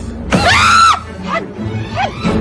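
A person's loud, high scream lasting under a second, rising, holding and then falling away, with music underneath.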